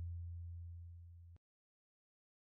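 A deep, steady low tone dying away evenly, then cut off abruptly about a second and a half in.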